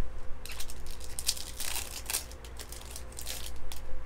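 Hands shuffling and sliding through a stack of Topps Chrome trading cards, a quick run of crisp rustling and crinkling strokes that starts about half a second in and dies away near the end.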